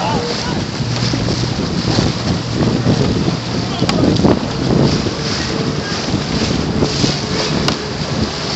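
Wind buffeting the microphone over a small boat's motor running steadily, with water splashing.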